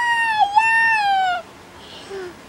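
A toddler's high-pitched squeal, one long held note with a slight wobble in pitch, that breaks off about a second and a half in.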